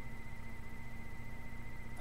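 Steady low electrical hum with a faint high-pitched whine and hiss: the background noise of the recording setup.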